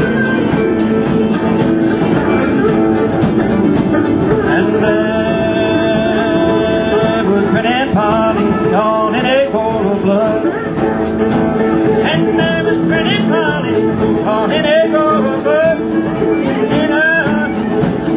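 Acoustic string band playing an instrumental break in an old-time folk ballad: strummed acoustic guitars and mandolin under a high lead melody whose notes slide and bend.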